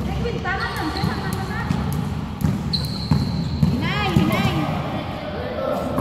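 A basketball bouncing on an indoor court at irregular intervals, with players' voices, and a brief high held tone about three seconds in.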